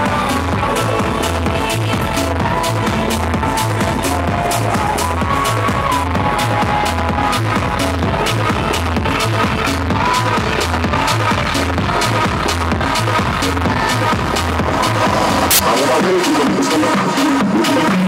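Electronic house dance music with a steady kick-drum and bass beat and ticking hi-hats. Near the end a cymbal-like hit lands and the kick and bass drop out, leaving a wavering synth line.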